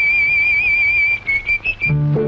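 A whistled melody in a film song, heard alone without the band: one long high note with a slight wavering vibrato, then a few short notes near the end.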